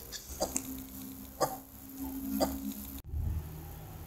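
Analogue alarm clock ticking about once a second over a faint steady hum. The ticking cuts off abruptly about three seconds in, leaving only a low hum.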